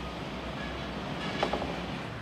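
Steady low rumble of a moving vehicle, heard from inside its cargo space, with a single sharp knock about a second and a half in.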